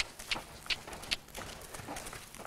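Horse trotting on soft dirt arena footing, with a run of short, sharp clicks about every half second.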